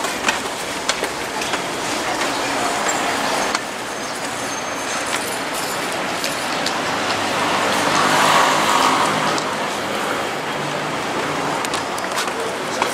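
Road traffic noise, steady throughout, swelling as a vehicle passes about eight seconds in.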